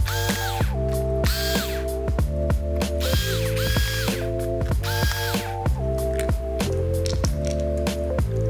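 Electric screwdriver whirring in about five short runs, each spinning up to a steady whine and winding down, with clicks in between, as it backs out a laptop's bottom-cover screws. Background music plays under it.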